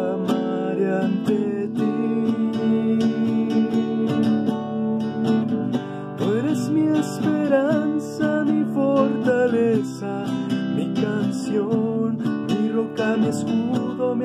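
Acoustic guitar strummed in a steady chord accompaniment, with a voice singing over it for a few seconds in the middle.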